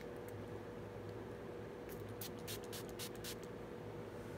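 A fine-mist pump spray bottle of facial priming water spritzed about six times in quick succession, each spritz a short hiss, starting about two seconds in.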